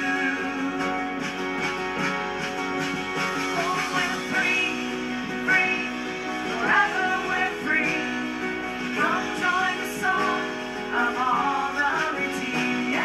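Live worship band playing: strummed acoustic guitar and sustained chords over drums, with a wavering melody line above from about four seconds in.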